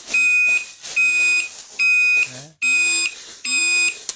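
Turn-signal beeper of an electric-vehicle electrical kit sounding while the turn signal flashes: five beeps on one steady high pitch, a little under one a second, each about half a second long.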